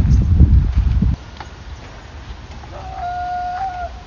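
Low rumble of wind and handling on the microphone that cuts off suddenly about a second in, then a bird's single held call lasting about a second near the end.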